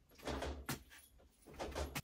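Faint knocks and low rumbles of things being handled and moved, with one sharp click a little under a second in.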